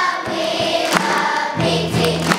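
Children's choir singing together over a live band, with sharp drum hits keeping the beat.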